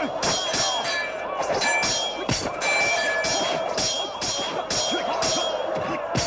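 Metal weapons clashing in close combat: a rapid series of sharp ringing clangs, about two or three a second, over a steady background din.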